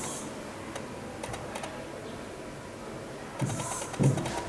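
Pen or stylus strokes on an interactive touchscreen board as digits are written: faint scattered taps and scratches, with a louder scratchy stroke near the end.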